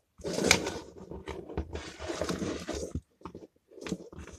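A small plastic DIN-rail circuit breaker and its wires being handled and shifted across a wooden workbench: a rustling, scraping clatter for about three seconds, then a few light clicks.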